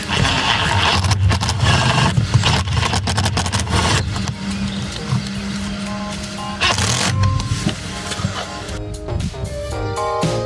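Makita cordless impact driver running and hammering as it drives a hex-head self-tapping screw through a panel bracket and its clip: a long rattling run of about four seconds, then a short burst a few seconds later. Background music plays along with it.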